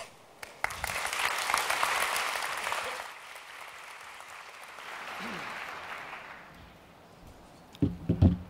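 Audience applauding. The applause starts about half a second in, is strongest for the first couple of seconds, then thins and dies away by about seven seconds in.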